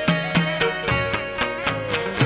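Chầu văn ritual music: a đàn nguyệt (moon lute) plucked against steady percussion strokes. A long held melody note glides slowly downward near the end.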